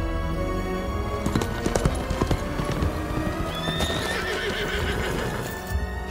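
A horse's hooves clip-clop, starting about a second in, and a horse whinnies a little past the middle, over the film's score music.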